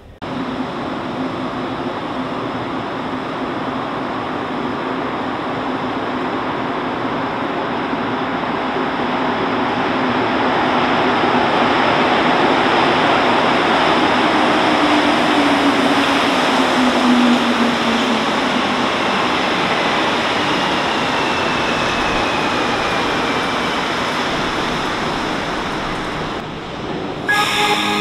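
A Montreal Metro Azur train on rubber tyres pulling into a station. A rushing noise builds as it arrives, and a falling whine follows as it slows to a stop.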